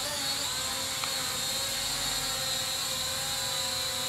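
JY019 toy quadcopter's propeller motors whining steadily as it hovers, several steady pitches held at an even level.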